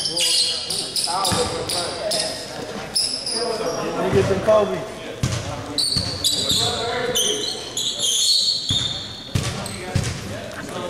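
Basketball court sounds in a gym: a ball bouncing on the hardwood floor and short high squeaks of players' shoes. Voices talk in the echoing hall.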